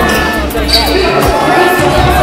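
Music track with a heavy, pulsing bass beat and a vocal line over it, played loud.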